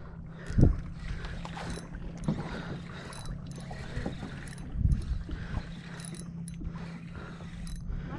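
Fishing reel cranked in a steady whirring wind, the line under load from a hooked fish, with light clicks throughout. There are two louder thumps, about half a second in and about five seconds in.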